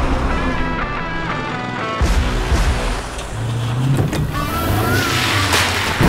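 Cinematic promo soundtrack: dramatic music layered with the deep engine rumble of heavy mining dump trucks. There is a low hit about two seconds in, and a rising whoosh that builds to a louder hit at the end.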